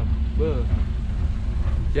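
Steady low rumble of an open-sided shuttle car's engine and tyres as it drives along, heard from its rear passenger bench.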